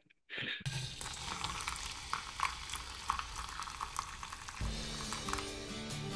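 Coffee being poured into a mug, a steady crackling splash, after a brief laugh at the start; acoustic guitar music comes in about three-quarters of the way through.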